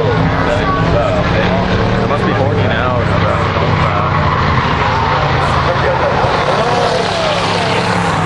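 A field of old beater race cars running around an oval track: a steady, loud engine drone with revs rising and falling as cars pass and lift.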